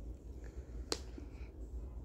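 A single sharp click just under a second in, over a quiet, steady low hum.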